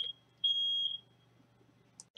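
Smoke alarm sounding long, high-pitched beeps, the last one cutting off about a second in; it was set off by lunch cooking.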